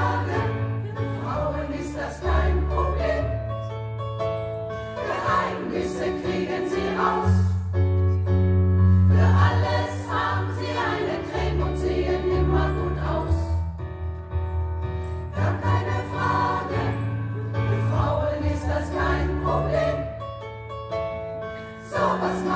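Women's choir singing in parts over an electric keyboard accompaniment with sustained bass notes.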